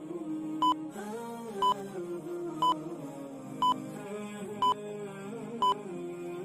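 Quiz countdown timer beeping once a second, six short identical beeps, over soft background music.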